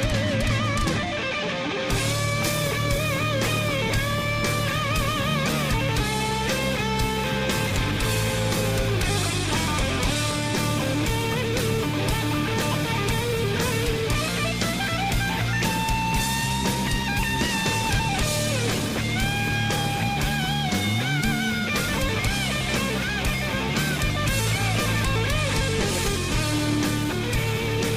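Heavy metal band playing live: an electric guitar lead with bends and vibrato over distorted rhythm guitar, bass and steady drums, with no vocals.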